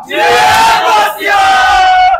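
Several men shouting a slogan chant together in two long, drawn-out phrases, the second held on one pitch near the end. It is the biryani stall workers' trademark chant.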